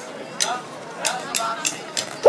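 Crowd chatter broken by sharp clicks; the last four come evenly, about three a second, as a drumstick count-in for a band about to play.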